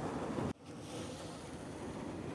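Ocean surf and wind on the microphone, a steady hiss that cuts off abruptly about half a second in and comes back a little quieter.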